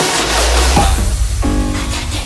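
Psychedelic trance music from a DJ mix. The fast kick drum and deep bass drop out about a second in, leaving a held synth chord as the track breaks down.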